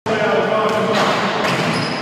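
People talking in a gym hall, with a few sharp thumps in between.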